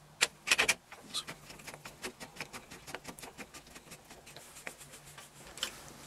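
Hand screwdriver driving a pan-head screw through a storm door's aluminium handle-set trim plate: a few knocks of the hardware in the first second, then a run of small quick clicks, about four or five a second, as the screw is turned in.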